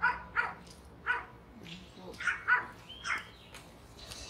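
Pet dogs barking: six short, sharp barks over about three seconds, two of them in quick succession near the middle. The owner takes the barking as her pets calling her to come inside.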